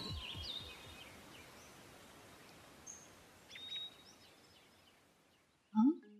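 Background music fades out in the first second, leaving faint outdoor ambience with a few short bird chirps about three to four seconds in. Near the end comes a brief rising tone.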